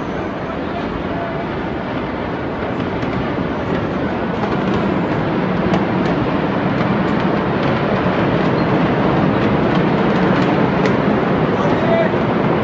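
Loud, steady rushing and rumbling noise picked up by a phone's microphone outdoors, growing slightly louder over the first few seconds, with a few faint clicks.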